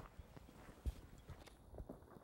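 Footsteps on stony, grassy dirt as people and a dog walk: faint, irregular soft crunches and thuds, one louder step about a second in.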